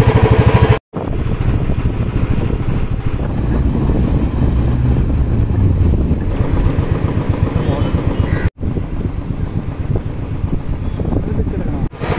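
Motorcycle engine running as the bike is ridden, heard from the rider's seat. The sound cuts out abruptly twice, about a second in and again past the middle.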